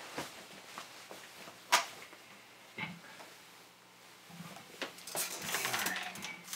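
Handling noise as a player sits down with an electric guitar plugged into an amp: scattered knocks and clicks, the sharpest about two seconds in, and rustling near the end. A low steady hum from the powered-up guitar amp runs underneath.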